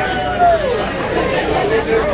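Bar crowd chatter between songs: many indistinct voices talking at once, with one voice briefly louder about half a second in.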